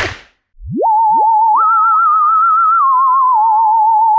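A sharp smack right at the start, then a cartoon-style whistle sound effect. A pure tone slides up about half a second in and holds with a fast wobble, steps up to a higher note and later drops back to the first.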